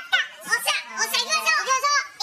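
Several high-pitched voices talking and calling out over one another.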